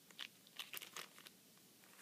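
Faint crinkling of a plastic packet of metal scrapbook embellishments handled in the hand: a few short crackles, mostly in the first second.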